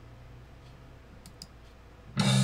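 Faint computer mouse clicks, a quick pair about a second and a quarter in, over low room hum.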